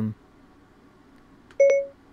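Room tone, then about a second and a half in, one short chime from Siri on a Mac, signalling that it is listening for a new command.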